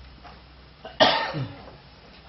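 A single loud cough about a second in, trailing off briefly.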